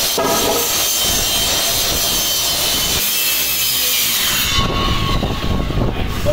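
Corded circular saw cutting through a thin ceiling panel, running loud and steady; about four and a half seconds in the cut eases and the saw runs on more quietly.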